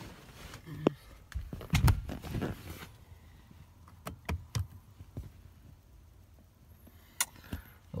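Handling noises in a car's back seat: rustling and a few knocks as a person shifts across the seat. Then a few clicks from the metal ashtray lid in the rear armrest as it is pressed and opened.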